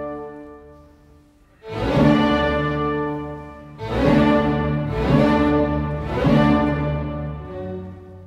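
Background orchestral music with held string chords. It fades almost away about a second and a half in, then four strong swelling chords come in, roughly one every second or two.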